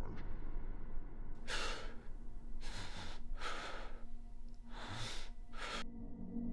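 Dark ambient drone with low steady tones, overlaid from about a second and a half in by five loud, airy breaths or sighs, unevenly spaced, the last one short.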